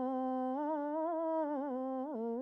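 A man's unaccompanied voice humming a long held note without words. From about halfway through, the pitch breaks into small wavering turns.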